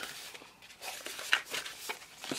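Paper sticker sheets rustling as they are handled and flipped through, with two sharper clicks in the second half.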